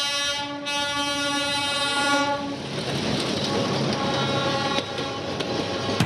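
Diesel locomotive's horn held on one steady note for about two and a half seconds, then the rumble and clatter of the train rolling past.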